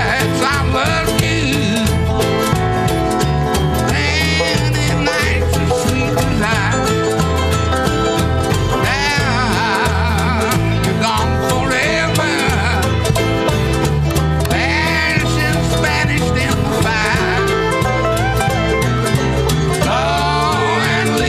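A live country band playing at a steady tempo, with an upright bass keeping a regular beat under a wavering lead melody.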